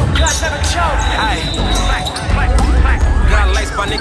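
Hip-hop music with a heavy bass plays under the sounds of an indoor volleyball rally: many short, high squeaks of sneakers on the gym floor and a few sharp smacks of the ball being hit.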